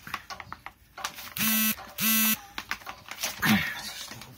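Two short, steady electric buzzes about half a second apart, each cut off sharply, as the corded electric chainsaw fails to start. Light handling clicks around them.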